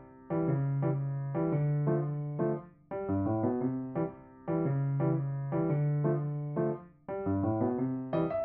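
Background music: a gentle piano melody with chords, played in short phrases with brief pauses about three and seven seconds in.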